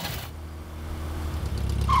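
Cartoon car engine sound effect for a taxi driving off: a steady low engine hum that grows louder.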